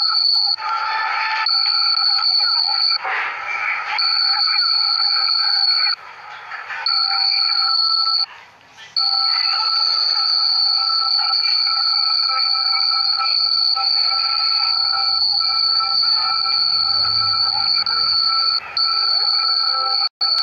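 A steady, high-pitched electronic ringing of several held tones at once, from audio stacked up layer on layer by recording a screen recording inside itself. It drops out briefly about six seconds in and again for under a second near the nine-second mark.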